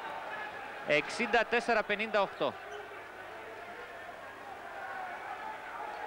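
Steady crowd noise in an indoor basketball arena, with a basketball being dribbled on the hardwood court.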